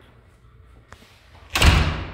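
A door slamming shut: one loud bang about a second and a half in, with a short echoing tail in the empty garage.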